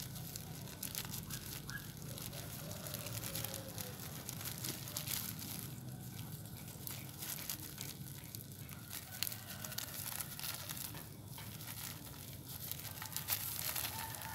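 Clear plastic bag crinkling and crackling irregularly as hands squeeze and wrap it around a coconut-coir root ball at the base of a desert rose cutting.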